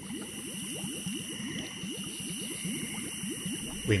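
Bubbling liquid sound effect: a steady, dense stream of small bubbles, like a thick soup bubbling.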